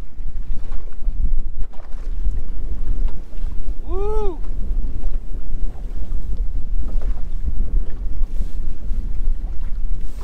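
Strong wind buffeting the microphone, a loud, ragged low rumble over the hiss of a choppy lake. About four seconds in, a single short tone rises and falls in pitch.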